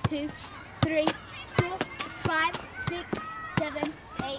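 Football kick-ups: a ball thudding repeatedly off a child's foot and knee, about two touches a second, with children's voices.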